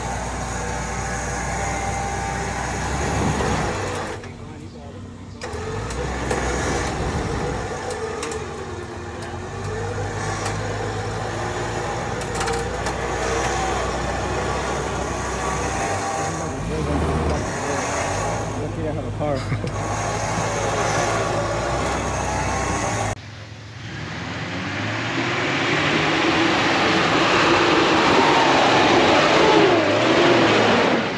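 Off-road 4x4 engines running on the trail, mixed with indistinct voices. About 23 s in the sound cuts abruptly to a louder, noisier vehicle sound.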